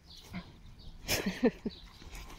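Pig grunting a few short times about a second in, while rolling and shifting in wet manure and straw, with a brief rustle of movement just before the grunts.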